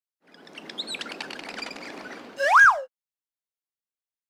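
Cartoon-style birdsong ambience of quick, high twittering chirps, ended about two and a half seconds in by one loud whistle that sweeps up and straight back down, then the sound cuts off.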